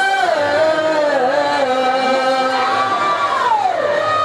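A singer's voice through a microphone and loudspeakers, holding long drawn-out notes in a folk song, with a slide down in pitch about a third of a second in and another near the end.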